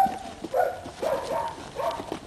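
Belgian Malinois puppy barking a few times in short, high yaps, with a sharp knock right at the start.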